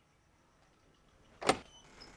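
A single sharp clatter from a metal security screen door about one and a half seconds in, with a brief metallic ring after it. It is near quiet before that.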